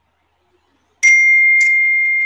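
A single bright ding about a second in, a bell-like tone that keeps ringing and fades slowly.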